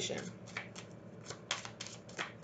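A deck of cards being shuffled by hand: a run of quick, sharp card flicks and snaps at uneven spacing.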